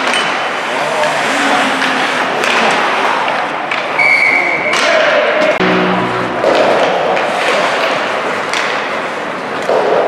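Indoor ice hockey game sounds: skates scraping the ice and sticks and puck knocking, under players' shouts. A brief high tone sounds about four seconds in.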